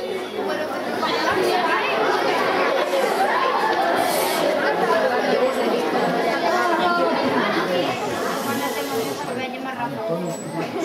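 Many children's voices talking and calling out at once, a steady chatter with no single clear speaker, echoing in a large hall.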